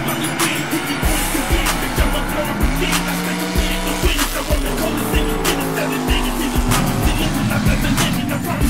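A drag race car accelerating down the strip, its engine heard under a hip-hop track with a steady beat.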